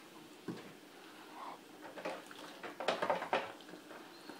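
Breaded smelt frying in an electric deep fryer: the oil sizzles steadily, with a few clinks and knocks from the wire fry basket and pans, the loudest about three seconds in.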